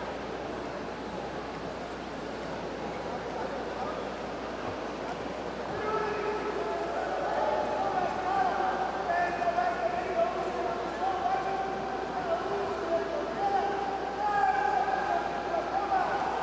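Folk dancers' boots stepping and shuffling on the floor under a murmur of voices. About six seconds in, a soft melody of held, slightly bending notes comes in over them.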